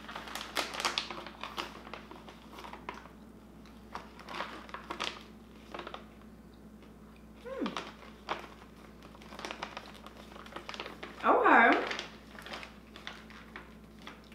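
Snack bag crinkling as it is torn open and handled, in short crackling bursts over the first few seconds. Brief voice sounds come about halfway through and again, louder, near the end.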